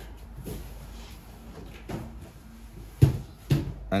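Quiet handling sounds as thread is guided through the side bobbin winder of an industrial sewing machine by hand, with a sharp knock about three seconds in and a softer one just after; the motor is not running.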